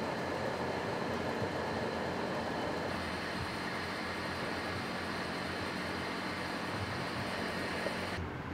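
Steady whir and rushing air of greenhouse ventilation exhaust fans running continuously, with a low hum beneath; the sound shifts slightly about three seconds in.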